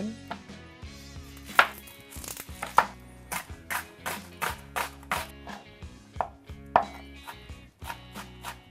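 Chef's knife chopping a red onion on a plastic cutting board: sharp, irregular knocks of the blade on the board, about one or two a second.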